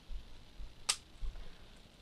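Blue plastic toolless drive tray snapping onto a 3.5-inch hard drive, its side pins seating in the drive's screw holes: a single sharp click about a second in, with faint bumps of handling around it.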